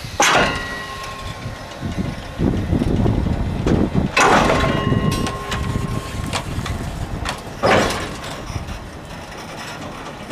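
Steel fittings of a freight wagon and its narrow-gauge transporter clanging: three loud metallic strikes about four seconds apart, each ringing on for a second or two, over a low rumble.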